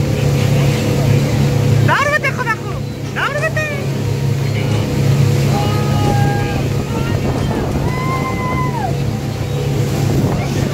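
Water taxi's motor running steadily under way, a low drone with the rush of water and wind over it; voices call out briefly over it.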